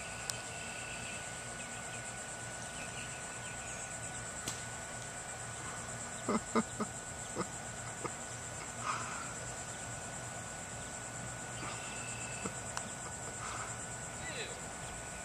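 Steady high-pitched buzzing of insects in the marsh grass, with a short laugh and a few brief knocks about six to seven seconds in.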